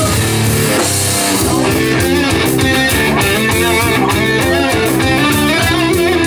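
A heavy metal band playing live: distorted electric guitar riffing over bass guitar and a drum kit, loud and steady.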